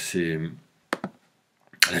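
A man's voice trails off, then a single short, sharp click sounds about a second in, followed by silence before the voice starts again near the end.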